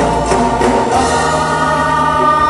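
Loud live band music with sustained, held chords, recorded from the audience; the deep bass drops out about a second in and a higher bass note takes over.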